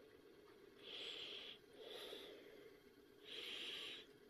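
Faint breathing close to the microphone: three short hissing breaths, the last one the longest, near the end.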